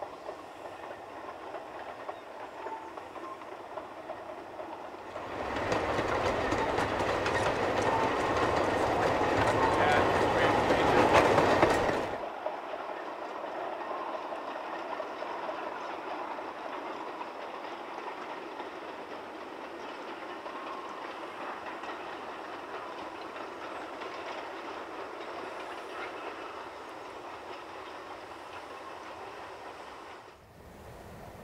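A long train of narrow-gauge slate wagons rumbling and clattering over the rails. A louder stretch of clatter builds from about five seconds in and breaks off suddenly at about twelve seconds, leaving a quieter steady rumble.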